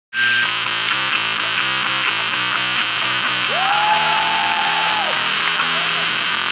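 Live rock band playing: distorted electric guitar over a repeating bass line and drums, starting abruptly. A long held note slides up about three and a half seconds in and drops away near five seconds.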